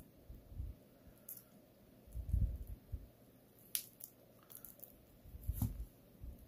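Faint handling noise of fingernails picking at the protective plastic film on a stainless steel watch bracelet and clasp: a few soft bumps with small crinkles and clicks now and then.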